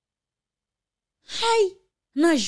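Near silence, then about a second and a half in, a woman's short breathy sigh with a falling voice.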